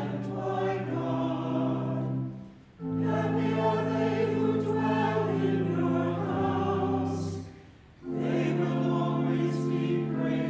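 Church choir singing in phrases of long, held chords, with short breaks between phrases about a quarter of the way in and again near the end.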